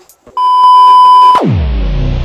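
A loud, steady electronic beep tone held for about a second, then a sharp downward pitch swoop into bass-heavy electronic music.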